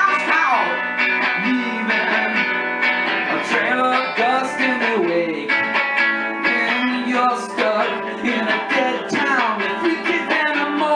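Electric guitar played in a live surf-rock song: strummed chords with sliding melody notes over them, an instrumental passage with no sung words.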